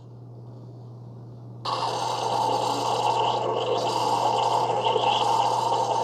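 Keurig K-Café single-serve coffee maker brewing a two-ounce espresso shot from a K-cup: a steady low hum, joined about a second and a half in by a sudden, louder steady rushing noise.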